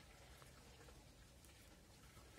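Near silence: room tone, with a couple of very faint clicks from metal knitting needles working the stitches.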